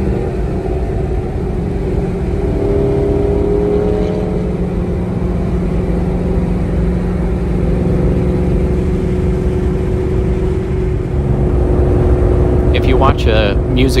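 Terminator SVT Cobra's supercharged 4.6-litre V8 cruising at steady highway speed, heard from inside the cabin as an even drone over road noise. A man starts talking near the end.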